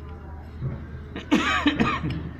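A person coughing about a second and a half in, a short loud run of coughs with some voice in it, over a steady low hum.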